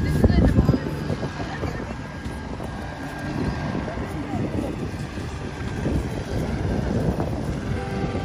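Wind buffeting a phone's microphone over the voices of passers-by in an open-air crowd.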